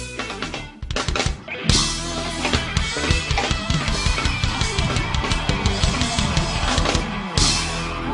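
Live pop band playing with a hard-hitting drum kit beat, bass and keyboards. After a short dip, the full band comes back in on a loud hit about a second and a half in.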